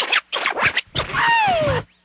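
A DJ scratching a record on a turntable with no beat underneath. A run of quick short back-and-forth strokes is followed by a longer pull whose pitch falls.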